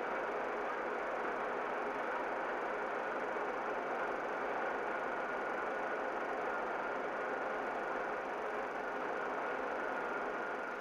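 Rotary newspaper printing press running: a steady, even rushing noise with a faint high whine through it.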